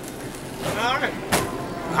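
Restaurant dining-room background with a brief voice about a second in, then a single sharp snap just over a second in.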